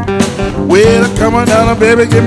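Live blues band playing a song with guitar, bass and a steady drum beat; about a third of the way in, a lead line enters over it, sliding and bending in pitch.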